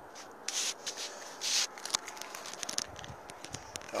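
Handling noise of a phone being turned around in the hand: fingers rubbing and scraping over the microphone, with two short hissy rubs about half a second and a second and a half in, and scattered small clicks.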